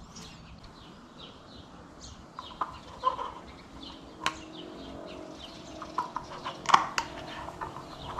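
Birds chirping in the background, with a few sharp clicks and knocks from gloved hands handling a cartridge oil filter element.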